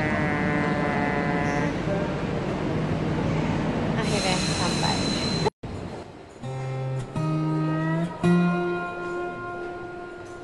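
Rail station noise with a train at the platform, including a pitched tone near the start and a high whistle with hiss about four seconds in. At about five and a half seconds it cuts off suddenly and gives way to plucked acoustic guitar music, one note at a time.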